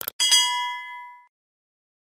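Subscribe-button animation sound effect: a short mouse click, then a bright notification-bell ding that rings out and fades within about a second.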